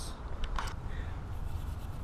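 A short scrape about half a second in, over a steady low rumble.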